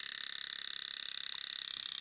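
Model thermoacoustic vibratory engine, a flame-heated glass-cylinder piston engine on a sled, buzzing as it oscillates: a high, steady buzz with a rapid, even pulse.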